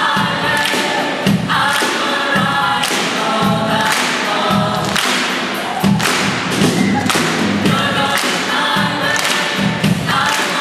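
A student choir singing an upbeat song, backed by a band with a drum kit, the singers clapping in time about once a second.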